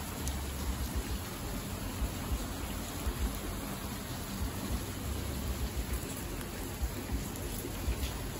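Steady rain falling and splashing on a wet wooden deck and pavement, with an uneven low rumble underneath.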